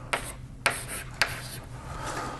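Chalk writing on a blackboard: three sharp taps about half a second apart, with faint scratching between them.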